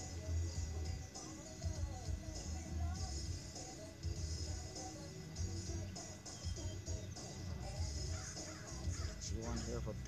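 Gulls calling over and over: short wavering calls, over a low rumble.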